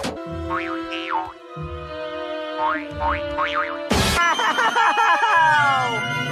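Cartoon score music with comic sound effects: several quick up-and-down pitch glides like boings over held notes, a sharp hit about four seconds in, then a run of falling whistle-like glides.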